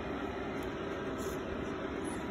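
Steady whir and hiss with a faint even hum, the running noise of cooling fans in a powered-on stack of switching DC power supplies and radio amplifiers.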